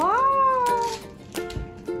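A child's long, high-pitched 'wow' that rises and then falls, lasting about a second, over light background music.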